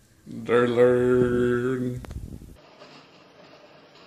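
A man's voice holds one long, steady low note, a sustained sung or hummed vowel, fading out about two seconds in; after that only faint room tone.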